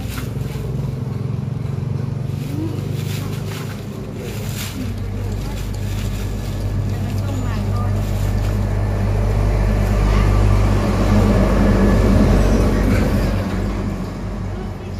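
A motor vehicle's engine running steadily close by, growing louder in the second half and easing off near the end. Plastic bag rustling is heard early on as drinks are packed.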